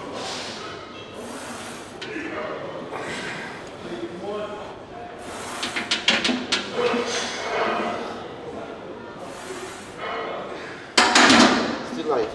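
Indistinct voices in a large, echoing gym, with a few sharp clicks midway and one loud thud near the end.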